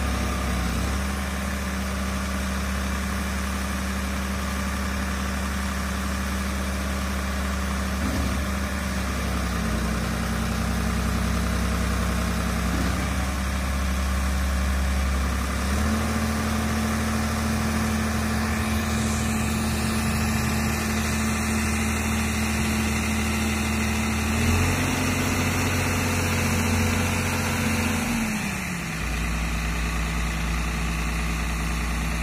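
Tractor diesel engine running at a steady speed. The speed steps up about halfway through and again a few seconds later, then drops back near the end.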